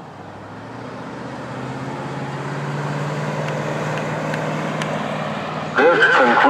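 A motor vehicle's engine hum that grows louder and rises slightly in pitch over the first few seconds, then holds steady. Near the end, a Whelen WPS-3016 siren's loudspeaker breaks in loudly with its recorded voice test message.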